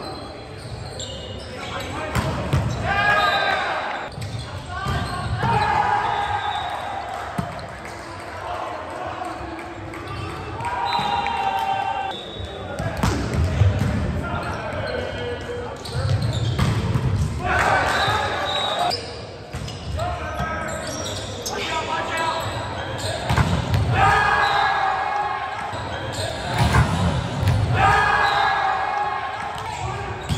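Indoor volleyball rallies echoing in a gym hall: players' voices shouting and calling over the sharp smacks and thuds of the ball being played.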